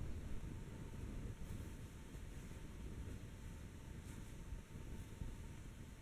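Faint low rumble of wind on the microphone over quiet outdoor background noise.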